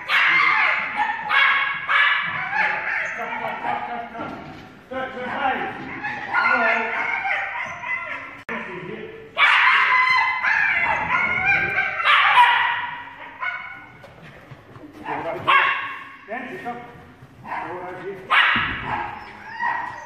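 Small dog barking and yapping excitedly in rapid high-pitched runs with short breaks, while running an agility course.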